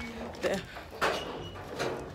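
A woman's voice saying a single word, followed by two brief rustling noises, about a second in and near the end.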